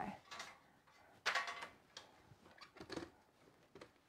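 Handling noises of a small personal blender being moved into place on a countertop: light knocks and clicks, with a louder scrape about a second in and a few more clicks near the end.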